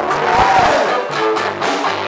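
Live classic rock band playing, with a drum kit keeping a steady beat under keyboard and other instrument lines. The recording is poor and rough-sounding.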